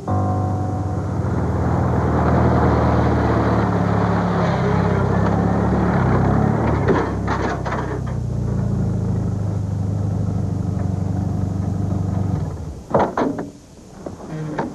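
Pickup truck driving in over a dirt lane and pulling up, its engine running steadily until it stops about twelve and a half seconds in, followed by a few clunks from the truck's door; music plays along with it.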